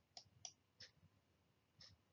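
Near silence with a few faint, sharp clicks, about four over two seconds, unevenly spaced.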